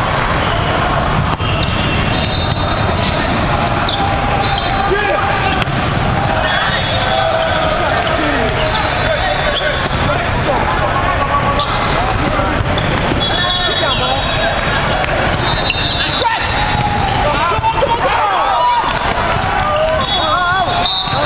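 Din of a large hall full of volleyball games: many overlapping voices of players and spectators, with sharp knocks of volleyballs being hit and bouncing scattered throughout. Referees' whistles from the surrounding courts blow several times, each a held high tone.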